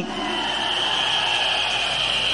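A rally crowd blowing many whistles at once, a steady shrill blur of whistles over crowd noise, in response to the speaker's line.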